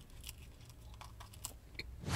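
Faint chewing with soft, scattered mouth clicks over a low steady hum.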